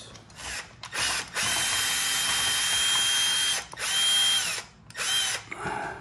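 Milwaukee cordless drill-driver backing out bolts. It gives a couple of short bursts, then a run of about two seconds with a steady high whine, then two shorter runs, each spinning up and winding down.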